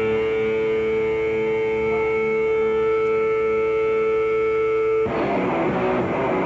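Noise-rock band playing live with distorted electric guitars: a held guitar chord rings out with a slow pulsing beneath it, then a little after five seconds the full band crashes back in with dense distorted guitars and drums.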